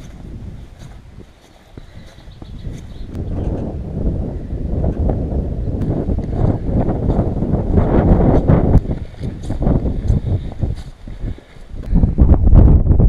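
Wind buffeting the camera microphone, building up a few seconds in into a loud, gusty rumble, with footsteps on stone steps.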